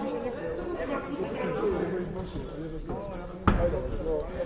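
Indistinct shouting voices in a boxing hall, with one sharp thud of a boxing glove punch landing about three and a half seconds in.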